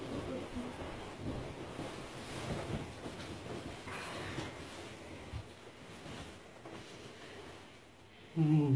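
Faint rustling and shifting of a bed comforter and sheets as people move and settle under the covers, with a few soft knocks.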